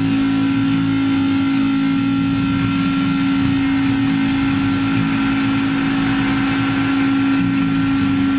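Distorted electric guitar through an amplifier holding one steady, droning note, with no drums playing.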